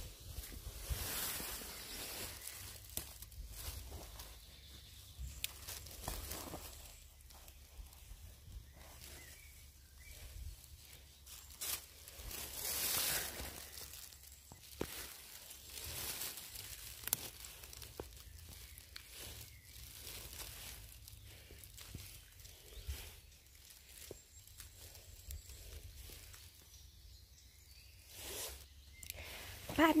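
Scattered rustling and crackling of dry leaf litter and twigs, with footsteps and hand-handling noise as wood ear mushrooms are picked. There are a few sharper snaps and a low steady rumble underneath.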